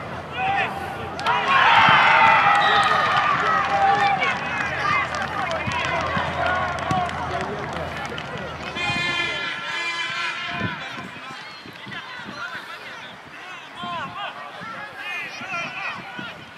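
Players and spectators shouting and calling across an outdoor football pitch during play, with many high-pitched voices overlapping. The shouting is loudest about two seconds in and quieter in the second half.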